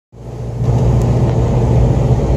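Car interior noise while driving: a steady low engine drone with road noise, heard from inside the cabin, fading in over the first half second.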